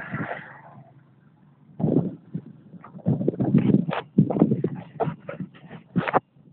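Wind buffeting a phone's microphone in quick, irregular gusts of low rumbling noise, starting about two seconds in.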